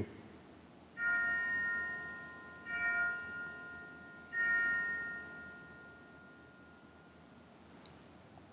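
Altar bell rung three times at the elevation of the consecrated host, each ring sounding a cluster of bright tones that fade slowly.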